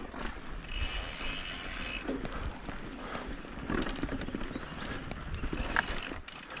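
YT Capra mountain bike rolling along a dirt singletrack strewn with dry leaves: tyre noise on the trail with irregular rattles and knocks from the bike over bumps. There is a brief steady high buzz about a second in, and a sharp clack near the end.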